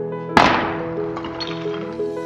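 A white plaster ball smashing to pieces: one sharp crash about a third of a second in, fading away, over soft background music with held notes.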